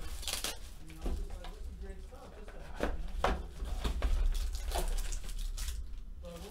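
Plastic shrink-wrap crinkling and tearing as it is stripped from a sealed cardboard trading-card box, then the box's lid being pulled open. The sharp rustles come in irregular short spurts every second or so, over a low steady hum.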